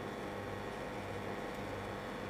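Faint steady background hiss with a low hum: room tone or recording noise, with no distinct sound event.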